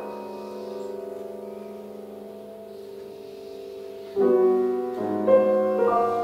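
Solo grand piano: a held chord dies away slowly, then about four seconds in a louder chord is struck, followed by a few more notes stepping upward.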